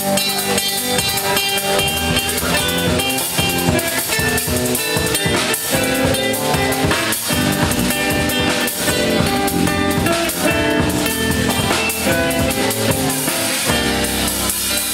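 Live instrumental trio playing: drum kit keeping a steady beat under an electric string instrument and an acoustic guitar, amplified through the stage PA.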